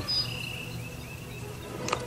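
Insects chirping in thin, high repeated notes, with a short click near the end.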